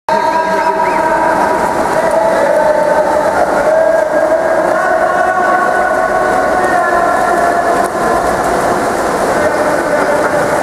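Loud, steady, echoing din of an indoor pool during a water polo game: players splashing and voices calling, blended into one wash, with several sustained tones running through it.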